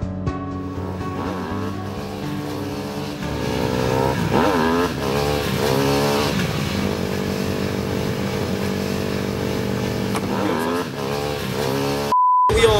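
Motorcycle engines revving over background music, their pitch climbing and dropping in repeated sweeps, most strongly a few seconds in and again near the end.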